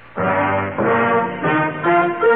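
Trumpet-led brass theme music comes in just after the start, playing held notes that step in pitch.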